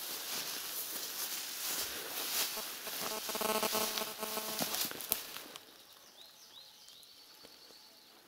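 Tall grass rustling and footsteps squelching on wet ground, with a brief pitched sound in the middle. About two-thirds of the way through it quietens, and a bird chirps faintly a few times.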